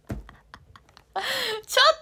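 A low thump and a few light clicks, then a woman's breathy laugh near the end.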